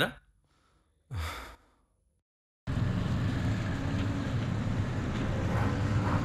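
A single short sigh about a second in. After a gap of dead silence, a steady low background hum starts abruptly and runs on.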